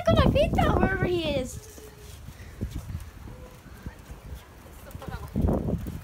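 A high-pitched voice calling out for about the first second and a half, then a quieter stretch with faint scuffs. Near the end comes a short, low rumble.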